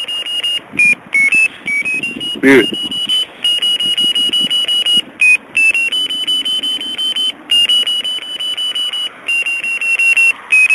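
Electronic ferret locator receiver beeping: a high, rapidly pulsing tone that steps up and down in pitch and cuts out briefly several times. There is a short, loud rough noise about two and a half seconds in.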